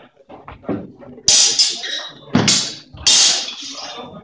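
Steel longswords striking together: four loud, sharp clashes in the second half, with lighter knocks and shuffling before them.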